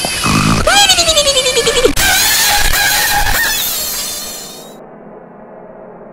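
A loud, harsh, distorted wail that falls in pitch over about a second and a half, followed by a noisy blast that fades away by about four and a half seconds in. A low steady drone is left after it.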